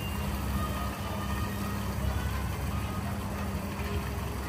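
Shopping cart wheels rolling across a supermarket floor, a steady low rumble with no break.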